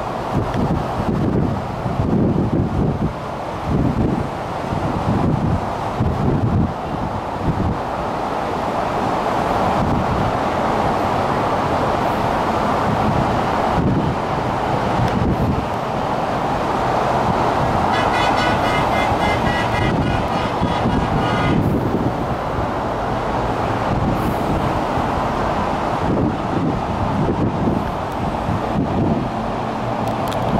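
Wind buffeting the microphone, in gusts, over a steady rushing noise from a ship under way. A brief high-pitched tone sounds for about three seconds a little past the middle.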